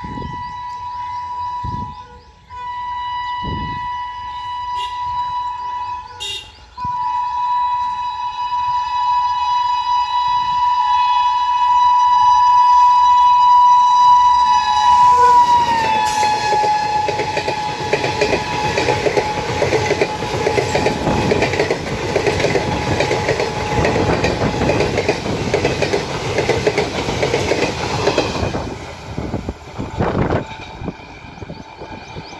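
An Indian electric locomotive sounds its horn in two short blasts and then one long blast, and the horn's pitch drops as the locomotive passes close by. The express train's coaches then rattle past at speed with steady wheel clatter on the rails, which dies away near the end.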